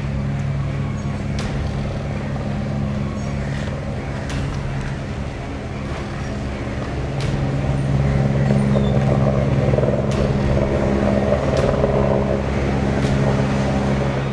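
Steady low engine-like hum, growing somewhat louder about eight seconds in, with a few faint clicks.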